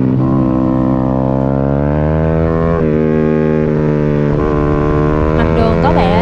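Single-cylinder 150cc sportbike engine running hard under racing load, recorded onboard, its note climbing slowly in pitch and dipping briefly twice.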